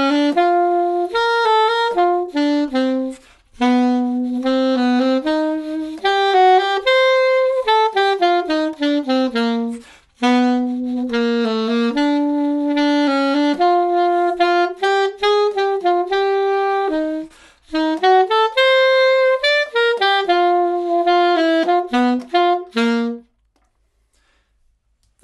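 Solo alto saxophone playing a lively melody in two-four time that mixes quaver triplets with plain quavers, in four phrases with short breath gaps between them. The playing stops about a second before the end.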